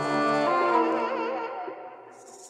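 Instrumental film-score music: a held chord of pitched tones, the higher ones wavering in pitch, which fades away over the second half.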